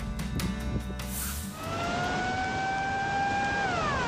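Background music stops about one and a half seconds in. Then an outdoor warning siren wails over a steady roar of noise. Its pitch rises slowly, holds, and falls steeply near the end. It is a tsunami warning siren sounding as the 2011 tsunami floods a Japanese harbour town.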